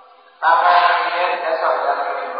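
Voices chanting in unison, starting abruptly about half a second in and held on sustained pitches.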